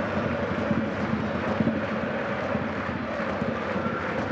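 Football stadium crowd noise: a steady din of supporters' voices, with many short, sharp beats scattered through it.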